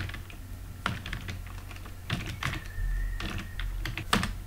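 Computer keyboard being typed on: a handful of separate keystrokes, spaced irregularly.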